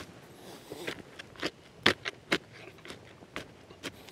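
Sharpened hardwood digging stick jabbing and scraping into wet, muddy soil, a string of short irregular crunches and scrapes as the ground is broken up.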